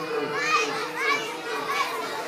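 Children's voices chattering and calling out, with a few short, high, rising calls about half a second and a second in.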